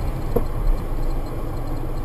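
Steady road and engine rumble inside a moving car, with one faint knock about half a second in.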